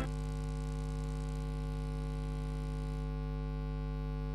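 Steady electrical mains hum: a low, even buzz with many evenly spaced overtones, holding at one level throughout.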